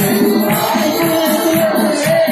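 Live congregational worship music: held sung notes over instruments, with a steady percussion beat from tambourine and hand-clapping.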